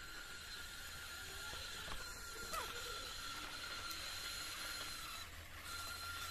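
Small DC gear motors of a home-built Arduino robot car whining steadily as the car drives over a dirt yard. The whine drops out briefly near the end, then comes back.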